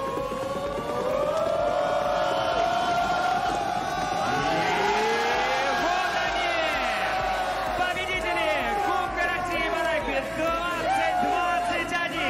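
A group of men shouting and yelling together in long drawn-out cries, the collective roar rising midway, then breaking into shorter shouts near the end: a team celebrating as the trophy is lifted.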